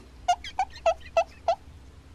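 Pencil eraser rubbed back and forth on a piece of cardboard: five short, evenly spaced strokes, about three a second.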